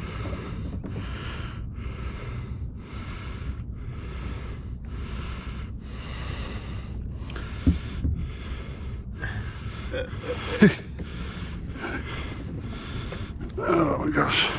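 A man panting hard close to the microphone, quick rhythmic breaths about one and a half a second, from the strain of holding a hooked alligator on a rope. Two short knocks come in the middle, the second louder.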